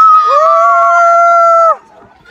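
Riders on a swinging fairground ride screaming: several voices give long, loud, held screams that cut off suddenly near the end.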